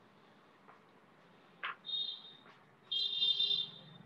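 A short high-pitched beep-like tone about two seconds in, then a louder, longer one lasting about a second near the end, over faint steady hiss and a few light clicks from an open microphone.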